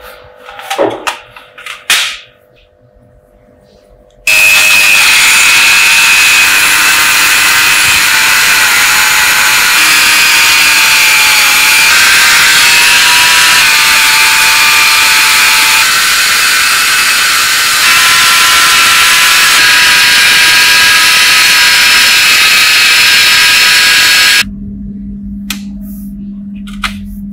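A small rotary tool spins a wire wheel brush against a small metal fitting: a loud, steady, high-pitched whine with a scratchy hiss. It starts suddenly about four seconds in and cuts off near the end. A few light handling clicks come before it starts.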